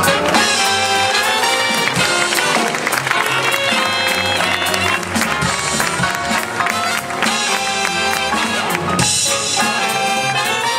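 Live big-band jazz: a trumpet, trombone and saxophone section playing over double bass, guitar and drums, an instrumental passage with the brass to the fore.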